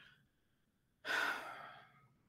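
A man's sigh: one breathy exhale about a second in, fading out in under a second.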